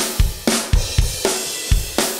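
Recorded drum-kit tracks from a multitrack session playing back on their own: a steady beat with hits about four a second.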